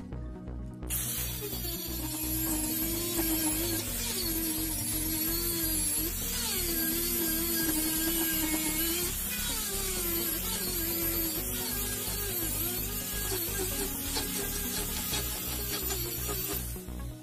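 An angle grinder grinding the steel head of an axe, a dense hiss with a wavering motor pitch that starts about a second in and runs on steadily. Background music with a steady beat plays underneath.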